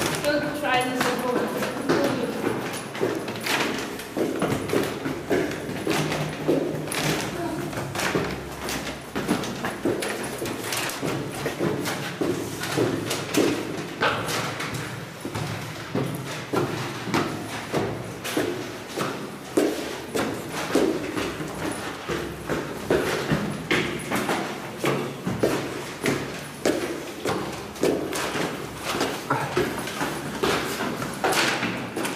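Several people's footsteps going up stone stairs in a stairwell, a continuous run of steps, with voices talking over them throughout.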